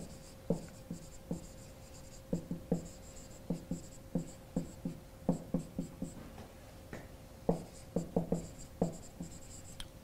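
Marker writing on a whiteboard: an irregular run of short taps and strokes as letters are formed, with a faint high squeak of the marker tip on the board.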